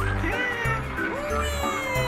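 Upbeat children's cartoon music with a bass beat about twice a second, overlaid with cartoon voice sound effects that slide in pitch: short rising-and-falling calls early on, then one long call that slowly falls in pitch through the second half.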